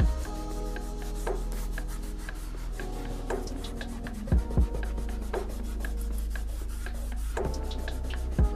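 Fingertips rubbing back and forth over paper, blending oil pastel into the sky, over background music of held notes with a few soft deep beats.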